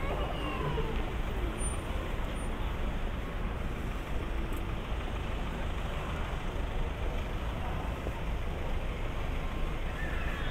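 City street traffic: cars driving past with a steady rumble of engines and tyres.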